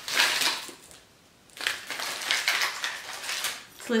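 Rustling of a fabric bag as a hand rummages through it for a house key, in two spells with a short pause about a second in.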